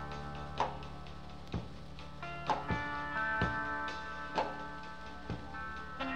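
Rock band playing live in a quiet passage: held guitar notes ring on, cut by sharp percussive clicks roughly once a second.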